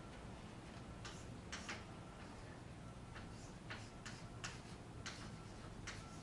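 Chalk writing on a chalkboard: a faint series of irregular taps and short strokes as symbols are written.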